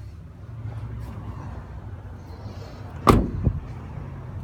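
A car door shut with a thud about three seconds in, followed by a smaller knock, over a low steady rumble.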